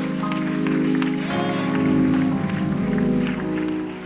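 Church keyboard playing sustained chords that change about a second in, with scattered clapping from the congregation.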